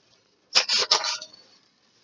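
Scissors cutting paper: a quick run of snips and paper rustle lasting about a second, starting about half a second in.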